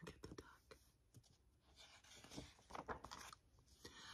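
Faint rustle and soft clicks of a picture book's paper page being handled and turned.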